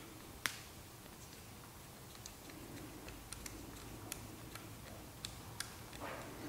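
Faint, light metal clicks from a T8 Torx driver threading the pivot screw back into a TRM Shadow folding knife: one sharper click about half a second in, then a scatter of light ticks in the second half.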